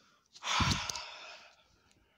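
A person's loud sigh, a long exhale close to the microphone, starting about half a second in and fading over about a second.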